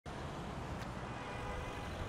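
Steady outdoor street ambience with a low rumble of distant road traffic.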